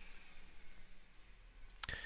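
Faint room tone: a low steady hiss and hum from the recording, with one short click near the end.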